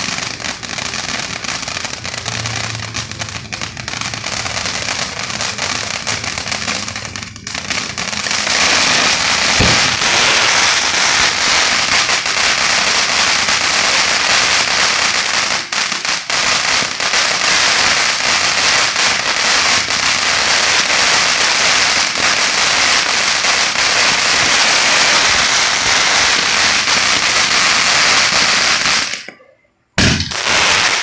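Selfie Moment hybrid ground fountain firework spraying sparks with a continuous noisy hiss. About eight seconds in it briefly dips, then comes back louder and fuller. The sound cuts off suddenly near the end.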